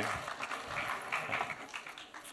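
Scattered applause from an audience, dying away.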